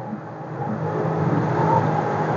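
Jet ski engine running steadily with a low hum, getting louder as it approaches. It is towing a second jet ski that has broken down.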